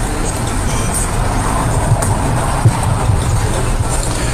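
Steady low rumble of room and background noise picked up by an open microphone, with a faint murmur and one short knock about two-thirds of the way through.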